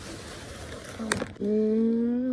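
A steady rushing hiss, a sharp click just after a second in, then a voice holding one long, steady note near the end.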